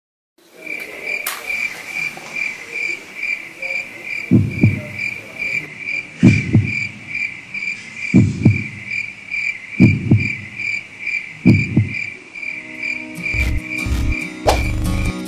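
Crickets chirping steadily, a high chirp about three times a second. From about four seconds in, low double thumps come roughly every two seconds. Music starts near the end.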